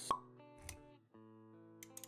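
Intro sound effects over background music: a loud pop right at the start, over soft music with held notes that briefly cuts out and resumes about a second in.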